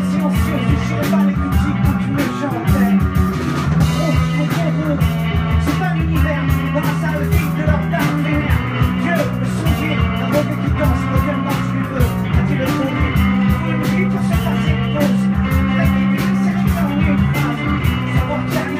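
Live rock band playing a loud, steady song with electric guitars and drums.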